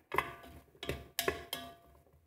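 A spatula knocking against the multicooker's metal cooking bowl while stirring onion and garlic in oil, four knocks, each with a short ring.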